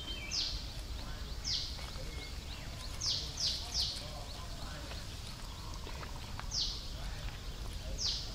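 A bird calling outdoors: short, high, downward-sweeping notes, six in all, three of them in quick succession around the middle, over a steady low background rumble.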